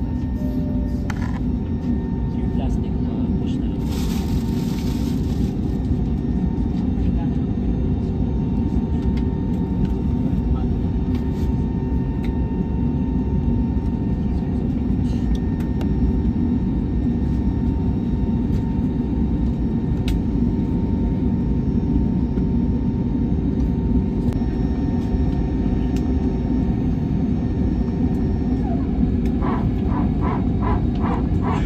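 Jet airliner's engines running steadily while the aircraft taxis, heard from inside the cabin as a loud, even rumble with a constant hum. Near the end, a quick run of rhythmic pulses comes in over it.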